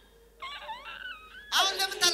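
A woman wailing and crying out: a soft, wavering moan starts about half a second in, then breaks into a loud, high-pitched wail near the end.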